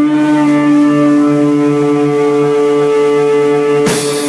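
Live rock band intro: electric guitars holding sustained, ringing chords with no drums. Just before the end the drum kit crashes in with a cymbal hit and the full band starts.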